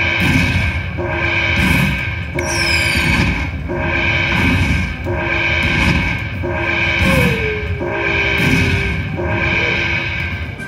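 Happy & Prosperous (Dragon Link) slot machine's bonus-tally music: a gong-like strike rings out about every 0.8 s as the win meter counts up the collected credit values. A falling high sweep comes about two and a half seconds in.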